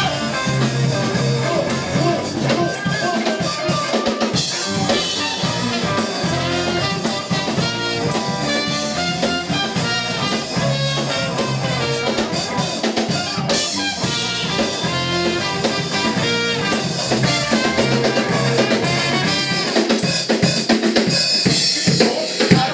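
Live funk band playing an instrumental: a drum kit with snare and bass drum keeping a steady beat under electric guitar and trumpet.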